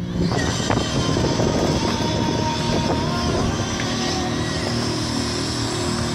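Skateboard wheels rolling on a concrete skatepark surface, with a few sharp clacks of boards, over a steady background hum.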